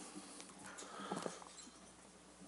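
Faint room tone with a few soft knocks and rustles around the middle, from a hardback Bible being closed and lifted off a wooden lectern.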